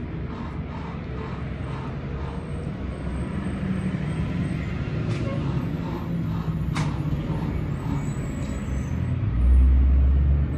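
Low, steady rumble of road traffic that grows louder partway through. A heavier low surge near the end is the loudest sound.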